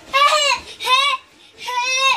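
A toddler squealing with excitement: three short, high-pitched shrieks of delight.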